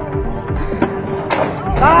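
Background music in a quieter passage, with one steady held note and a couple of faint clicks.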